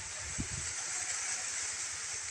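Steady hiss of wind rustling through dry corn stalks, with a couple of faint low knocks about half a second in as the sack is handled.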